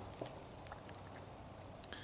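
Quiet woodland background with a few faint, scattered clicks.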